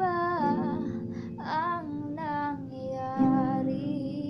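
A woman singing held, gliding notes over acoustic guitar chords. A new chord is strummed about three seconds in.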